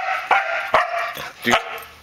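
A Samoyed giving several short barks in quick succession in the first second and a half, each starting sharply, as it vocalises back when spoken to.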